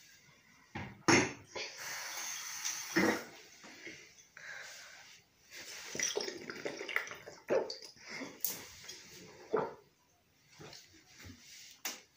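Water swirling and sloshing in a glass bottle as it is spun and drunk from upside down, with a couple of sharp knocks about one and three seconds in.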